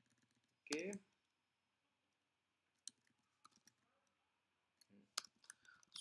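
Faint, scattered clicks of laptop keyboard keys pressed one at a time as code is edited, in small clusters separated by near silence.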